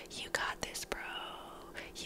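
A woman whispering softly and breathily close to a headset microphone in a mock ASMR voice, with a few small mouth clicks.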